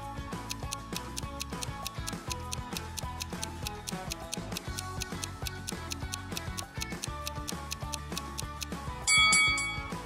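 A clock-ticking countdown sound effect, steady and even, over soft background music, timing the pause for the viewer to solve the puzzle. About nine seconds in a louder ringing chime sounds for about a second, signalling that time is up.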